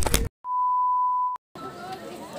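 A single steady electronic beep tone lasting about a second, set into the edit. The sound cuts to dead silence just before and just after it.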